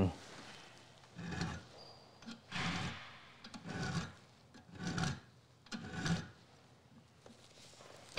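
Small hand file stroking across the steel cutting lip of an auger bit held in a vise, sharpening the lip: about five short file strokes roughly a second apart, stopping about six seconds in.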